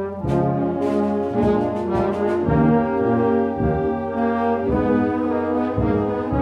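Military brass band playing a national anthem, held brass chords moving to a new chord about every half second.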